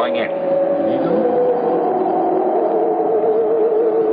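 A steady electronic drone of several held tones from the film's sci-fi soundtrack, wavering slightly near the end.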